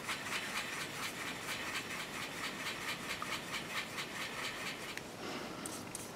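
Cheap watercolour brush scrubbing paint across thin printer paper: a faint, scratchy rasp of bristles on paper that stops about five seconds in.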